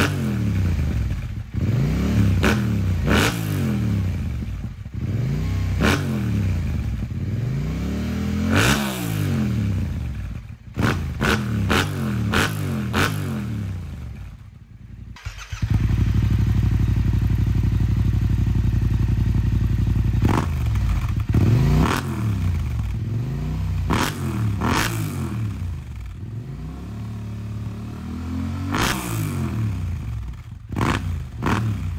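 2021 Yamaha MT-07's 689 cc parallel-twin engine, breathing through an Akrapovič full exhaust system, revved in repeated throttle blips that rise and fall. About halfway through it drops back briefly, then holds steady revs for about four seconds before the blipping resumes.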